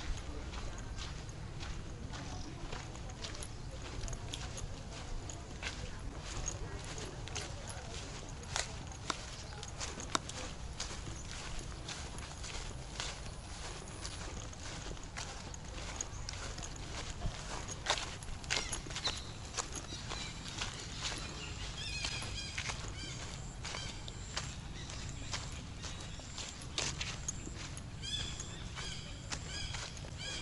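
Footsteps at a steady walking pace on a dirt path, about two a second, over a steady low rumble on the microphone.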